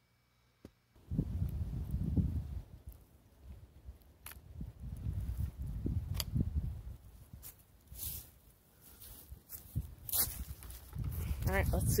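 Wind buffeting the microphone in an open field: an uneven low rumble that starts about a second in, with a few faint sharp clicks. A voice comes in near the end.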